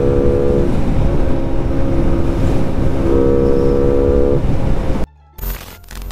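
Modified Honda Wave underbone motorcycle being ridden at a steady speed: the single-cylinder engine's even note under heavy wind noise on the microphone. It cuts off suddenly about five seconds in, followed by a few sharp clicks.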